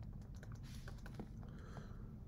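Faint taps and short scratches of a stylus writing on a drawing tablet, a few separate clicks with a brief scratch just before a second in and another near the end.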